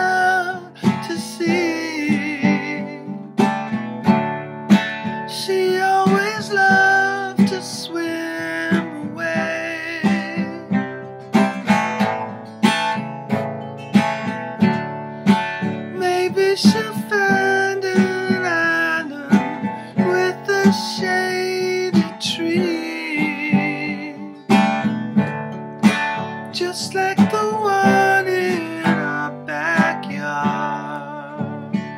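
Acoustic guitar strummed in a steady rhythm, with a man's voice singing long held notes over it.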